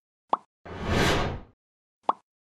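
Sound effects of an animated logo end card: a short pop about a third of a second in, then a whoosh that swells and fades over about a second.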